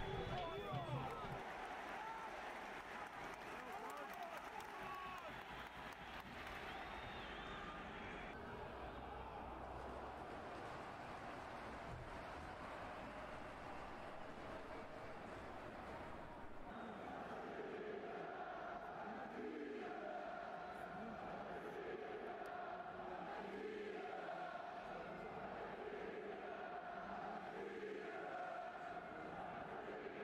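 Faint open-air stadium ambience with distant crowd voices and chanting. About sixteen seconds in it gives way to a different faint sound with a steady, repeating pattern.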